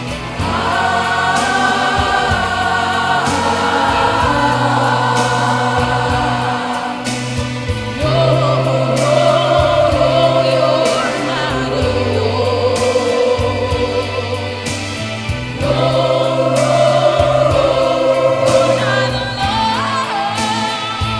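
A choir singing in harmony, holding long sustained chords that shift every few seconds, with a louder passage starting about eight seconds in.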